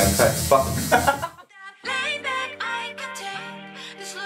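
A tattoo machine buzzing under a man's voice for about the first second, cutting off suddenly; after a short pause, background music with a sung melody over held chords starts about two seconds in.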